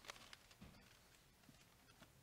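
Near silence: room tone, with faint paper rustling and a few light clicks and soft knocks in the first half second or so as pages are handled on a wooden lectern.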